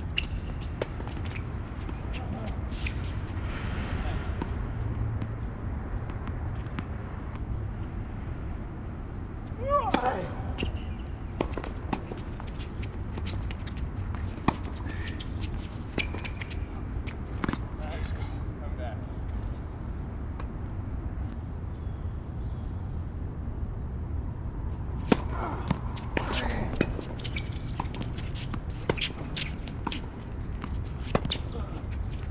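Tennis balls struck by rackets during doubles rallies on a hard court: sharp pops at uneven intervals, in clusters. Brief voices come in about ten seconds in and again near the end, over a steady low rumble.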